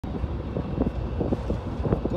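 Wind buffeting a phone's microphone as a low, uneven rumble, with scattered light knocks.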